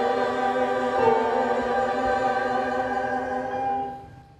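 Mixed choir of men's and women's voices holding a sustained chord, shifting notes about a second in, then releasing together sharply near the end.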